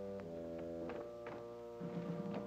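Orchestral film score holding a low, sustained brass-led chord that shifts a couple of times, with a few soft knocks in the second half.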